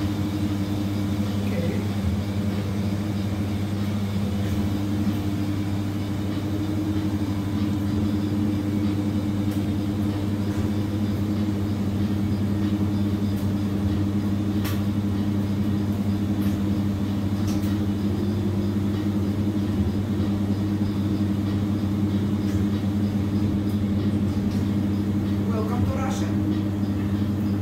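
Steady low machine hum that holds the same pitch throughout, with faint voices in the background.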